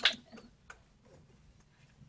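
Quiet room tone with a few faint clicks and taps. A short loud burst comes right at the start.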